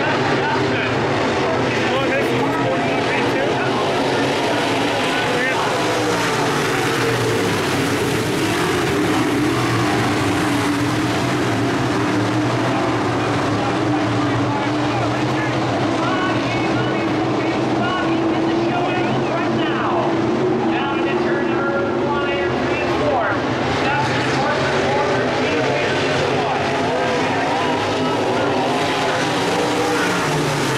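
Several dirt modified race cars' V8 engines running around the track together, a steady, dense engine sound whose pitches waver up and down as the cars go by.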